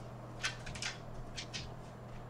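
Faint handling noise: a handful of short, soft rustles and scuffs in the first second and a half as a plate of pizza is lifted toward the microphone, over a steady low hum.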